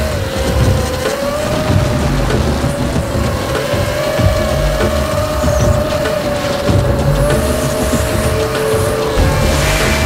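Emax 250 racing quadcopter's electric motors whining, the pitch rising and falling with the throttle, over background music with a steady bass beat.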